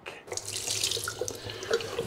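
Water running steadily from a tap into a washroom basin, starting about a third of a second in.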